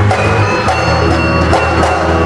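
Javanese gamelan ensemble playing: sustained ringing metallophone tones with several sharp kendang drum strokes.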